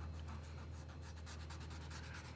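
Faint scratching of a chalk pastel drawn across paper in quick, closely repeated strokes, laying down a thick line of chalk.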